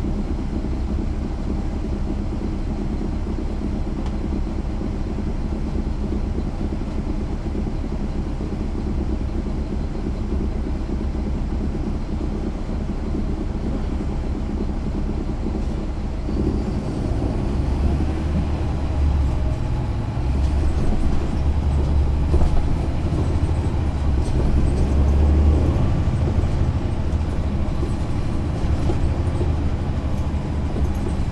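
Caterpillar C13 ACERT diesel engine of a NABI 416.15 transit bus, heard from the rear seats, running with a steady drone, then working harder with a louder rumble from about halfway through.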